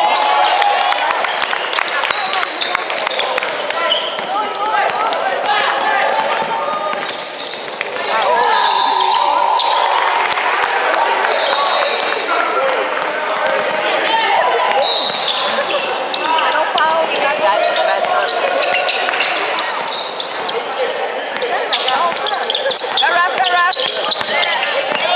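Basketball game on an indoor hardwood court: the ball bouncing and striking the floor again and again, under players' shouts and spectators' chatter in an echoing sports hall.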